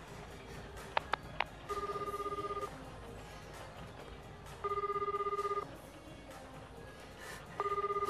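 Telephone ringback tone heard by the caller while the call rings out: a low, buzzing tone about a second long, repeating every three seconds, three rings in all. Just before the first ring come three quick clicks.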